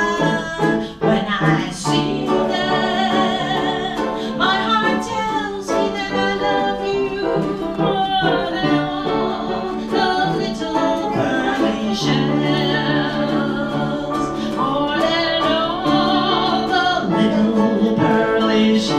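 A woman singing a song with vibrato, accompanied by ukulele and piano.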